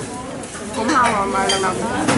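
A voice talking over the background clatter of a busy eatery, with the knock and clink of dishes and cutlery.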